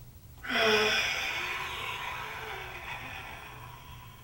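Goju-ryu Sanchin kata breathing: a karateka's long, forceful exhalation through the mouth. It starts about half a second in with a short voiced grunt, then goes on as a hiss that tapers off over about three seconds.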